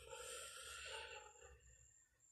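Near silence: a man's faint breath in the first second or so, then room tone.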